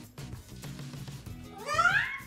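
Male eclectus parrot giving one loud rising squawk near the end, over soft background music.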